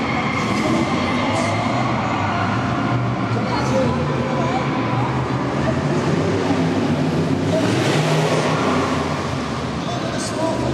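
A car's engine revving up and down as the car is driven hard around a tight track, with voices in the background.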